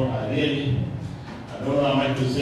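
A man speaking, with no other sound standing out.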